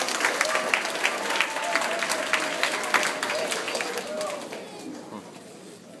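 Audience clapping, a dense patter that fades out about four to five seconds in, with a voice faintly under it.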